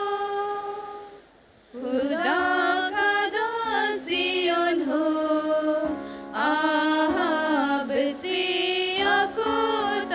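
A group of young people singing a devotional song together. The singing breaks off for about half a second around a second in and dips briefly just before six seconds, then carries on.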